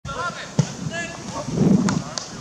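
A football struck hard with a sharp knock about half a second in, then players shouting. Another sharp knock of the ball comes near the end, fitting the goalkeeper blocking the shot with his outstretched leg.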